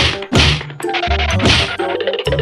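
Three cartoon-style whack sound effects, dubbed over background music with a steady bass line.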